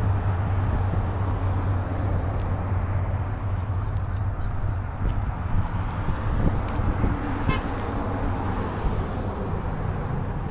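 Steady low hum of vehicle engines and road traffic, with a broad rush of noise over it. A short run of faint ticks comes about seven and a half seconds in.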